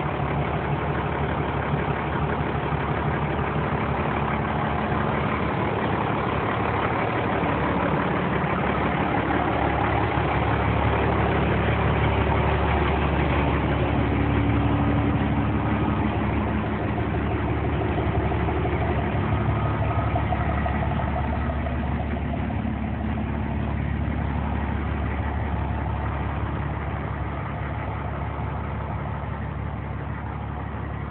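Engine of a 1993 International/KME pumper fire truck idling steadily, a little louder around the middle and easing off slightly near the end.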